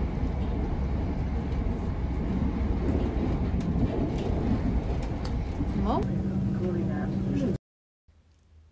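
Steady rumble of a passenger train running, heard from inside the carriage. Near the end a short rising tone levels off into a held hum for about a second and a half, then the sound cuts off suddenly.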